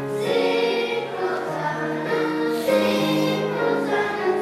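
Children's choir singing a song, with notes held and changing every half second or so.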